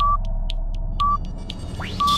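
Broadcast countdown clock sound effect: a short electronic beep once a second, with quick ticks between the beeps over a low rumbling drone. Near the end a rising whoosh sweeps upward.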